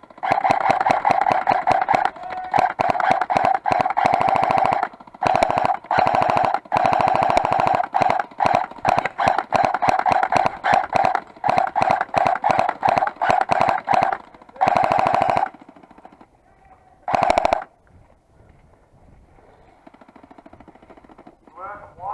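Airsoft M249-style support weapon firing long full-auto bursts: a fast, even rattle of shots over a steady motor whine, broken by short pauses. It stops about fifteen seconds in, fires one short burst a second or so later, and then falls quiet.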